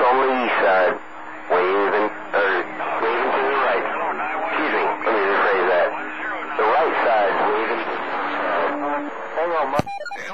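A voice coming in over a CB radio receiver on channel 28 skip, thin with the highs cut off and unclear in words, with a steady hum under parts of it. A sharp click comes just before the end as the radio is keyed to transmit.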